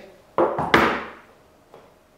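A Rolex presentation box being put aside on a desk: two sharp knocks about a third of a second apart with a short ring-off, then a faint tick.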